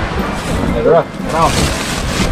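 People talking in short phrases over a steady low rumble.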